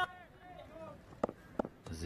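Quiet live-cricket broadcast sound: a commentator's voice trailing off, a faint background, and two short clicks past the middle.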